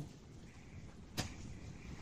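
A single sharp plastic click from a hand working an open Blu-ray case, a little over a second in, over faint room noise.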